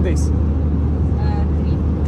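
Airliner cabin noise in flight: a loud, steady low drone of engines and rushing air that does not change.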